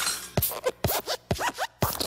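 Cartoon sound effects of the Pixar Luxo Jr. desk lamp hopping: four springy hops about half a second apart, each a sharp thud followed by a quick falling squeak.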